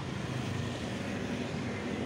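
Street traffic: motorcycle and car engines running as they move slowly past, a steady hum that wavers slightly.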